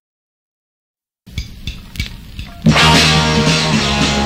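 Silence, then a punk rock song starts: a few drum hits over low bass notes about a second in, and the full band with guitars comes in loud near the end.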